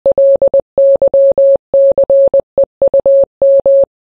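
Morse code beeps: a single steady mid-pitched tone keyed in short and long pulses, in about five groups with brief pauses between them, stopping just before the end.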